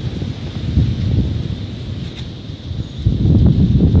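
Strong gusty wind buffeting the microphone: an uneven low rumble that rises and falls, growing louder about three seconds in.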